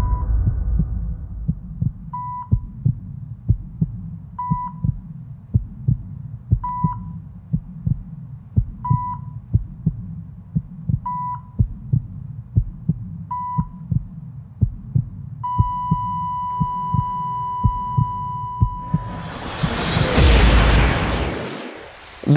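Sound-effect track: a heartbeat thumping steadily while a heart-monitor beep sounds about every two seconds. About fifteen seconds in, the beeping gives way to a long unbroken flatline tone, and near the end a loud rising whoosh sweeps in.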